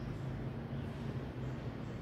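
Faint, steady outdoor background noise, a low rumble and soft hiss with nothing distinct in it.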